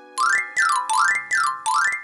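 Comic whistling sound effect for a hurried getaway: a pure tone sliding up and down over and over, about three slides a second, each with a hissy edge.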